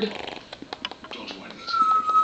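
A pet bird mimicking a cat's meow: a pitched meow-like call fades out right at the start, followed by scattered faint clicks and then a steady high whistled note starting near the end.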